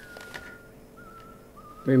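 A man whistling a slow tune, a few held notes that step up and down, with a few soft clicks under it.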